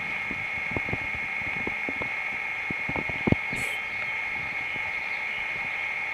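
Puppy squirming in grass during a belly rub: soft, irregular rustles and clicks, with one sharper click about three seconds in, over a steady high-pitched drone.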